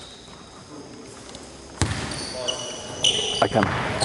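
A basketball bouncing on a gym floor and sneakers squeaking as play starts, beginning with a sudden bounce about two seconds in after a quiet stretch.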